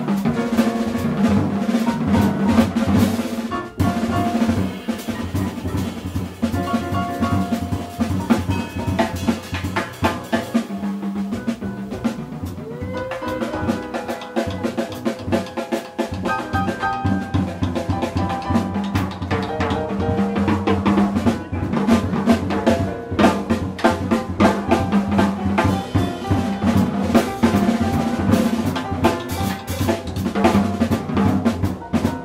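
Live jazz from piano, upright bass and drum kit, with the drums busy and out in front: snare, rimshots, rolls and bass drum over piano chords and a walking bass line.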